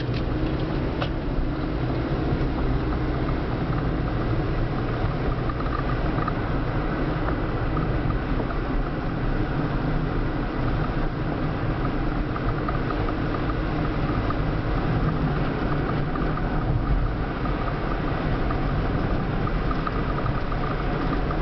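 Steady road and engine noise of a car being driven, heard from inside the cabin.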